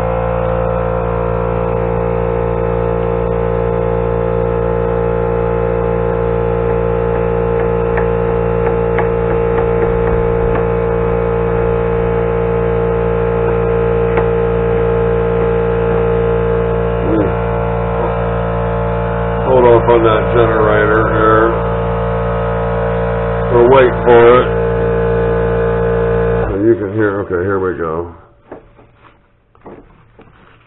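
Steady electrical hum from the mini lathe's motor drive, made of several steady tones, that cuts off about 27 seconds in.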